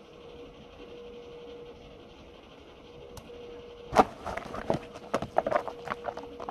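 Faint room tone with a steady low hum, then from about four seconds in a quick run of sharp clicks and light clatter, like small objects such as cards or letter tiles being handled on a table.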